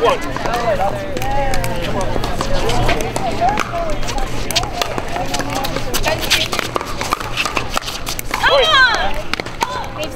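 Pickleball rally: repeated sharp pops of paddles striking the plastic ball, over steady chatter of voices. A loud voice cries out about eight and a half seconds in.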